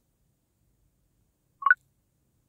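Short electronic blip of a few quick tones near the end, after near silence.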